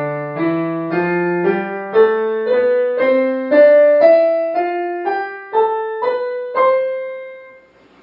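C major scale played on a digital piano, rising evenly at about two notes a second and ending on a held top note that fades away.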